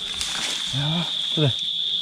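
Insects chirring in one steady, unbroken high-pitched tone, with a man's brief word over it about a second in.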